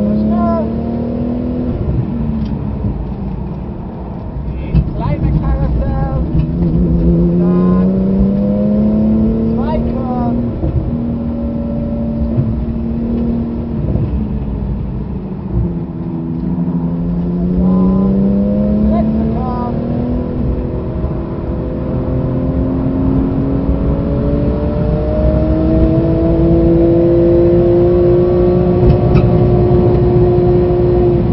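Porsche 911 GT2 RS's twin-turbocharged 3.8-litre flat-six heard from inside the cabin under hard driving: the engine note drops as the car slows in the middle, then climbs in one long steady rise as it accelerates flat out up the straight past 200 km/h.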